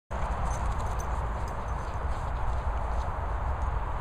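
Wind buffeting the microphone outdoors: a steady low rumble and hiss, with a few faint clicks.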